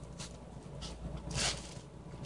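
Hand spray bottle spritzing water onto drying clay to moisten it: a few short hissing sprays, the longest and loudest about a second and a half in.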